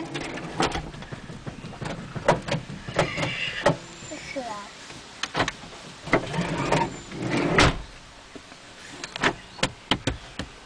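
Irregular clicks and knocks from a toddler handling the steering wheel and controls inside a parked van's cabin, mixed with a child's short wordless vocal sounds.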